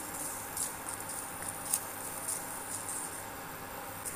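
A wooden spatula stirs whole cumin, fenugreek, coriander and fennel seeds as they dry-roast in a nonstick pan. The seeds make a light scraping rattle with scattered small ticks over a steady low hiss.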